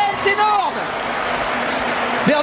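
A male television commentator's voice over the steady noise of a large stadium crowd.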